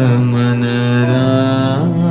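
Devotional bhajan chanting: a voice holds one long sung note, bending slightly and sliding to a new pitch near the end.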